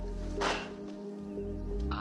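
Background film music with steady held tones, cut by one sharp swish of a martial-arts kick through the air about half a second in.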